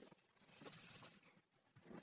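A person drawing a short breath, heard as a brief hiss lasting under a second near the middle of the pause.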